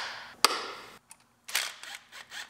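An air box lid spring clip snapping shut with a single sharp click about half a second in, followed by a brief scuffle of handling near the end.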